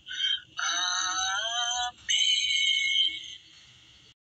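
A very high-pitched, synthetic-sounding voice chanting a Quran recitation in three short phrases, the middle one gliding up and down. It fades out after about three seconds.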